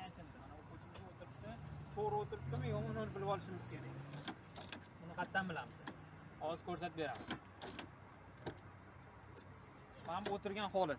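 Low conversation between two men, with scattered short clicks and knocks.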